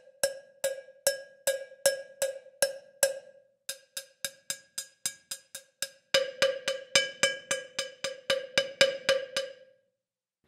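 Sampled cowbell from the GCN Signature Three Cowbells library struck in a steady run of about four hits a second, played with its dampening on, the sound of a cowbell muted by holding it in the hand. The hits turn quieter and shorter for a couple of seconds mid-way, then louder and brighter for the last few seconds.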